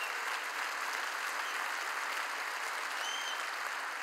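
A large congregation applauding: many hands clapping in a steady, even wash of sound. About three seconds in, a short high tone sounds over the clapping.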